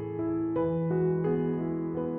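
Soft, slow piano music: single notes struck roughly three times a second, each ringing on under the next.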